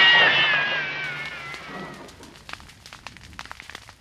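Fading tail of a gunshot sound effect: a wavering high whine slides down in pitch and dies away over about two seconds, leaving faint crackle.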